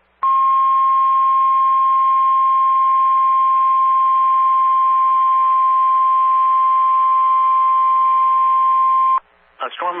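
Weather-radio warning alarm tone: a single steady high tone held for about nine seconds, then cutting off suddenly, with faint radio hiss beneath. It is the alert signal that announces a hurricane and storm surge warning. A voice starts reading the warning right after it.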